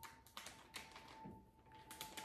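Near silence with a few faint taps and clicks from a cardboard box being handled, with a faint steady high tone underneath.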